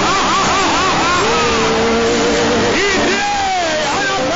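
A man's voice praying aloud in tongues, in quick repeated rising-and-falling syllables about four a second. This breaks into one held note, then more gliding cries near the end, all over steady loud background noise.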